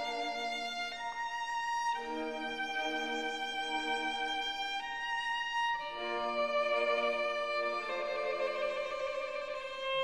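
Background music: a slow violin melody of long held notes over a sustained lower accompaniment.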